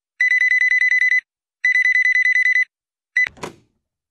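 Landline telephone ringing with a trilling electronic ring: two rings of about a second each. A third ring is cut short by a clunk as the receiver is picked up.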